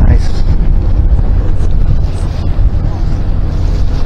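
Wind buffeting the microphone on the open deck of a moving boat: a loud, uneven low rumble.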